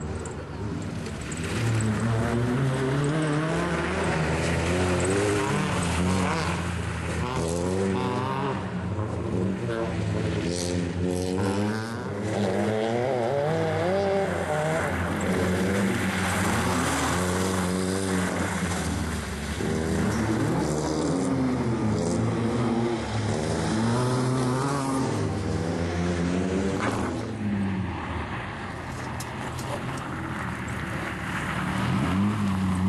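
Small hatchback rally car's engine being driven hard on a loose, snowy course, revving up and dropping back again and again as the driver accelerates, lifts and shifts through the corners.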